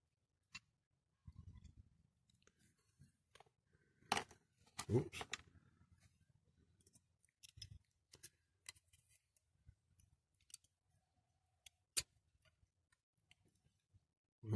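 Faint, scattered clicks and taps of a clear plastic window insert being handled and pressed into the body of a Dinky Toys die-cast model car, with a sharper click about four seconds in and another late on.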